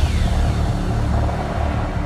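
Intro music sting: a deep, pulsing bass rumble with a falling sweep at its start.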